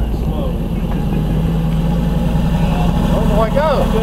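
Hummer H2's V8 engine running steadily under load as the SUV takes up the strain of a chain towing a small yard locomotive; the low drone builds slightly in the first second and then holds.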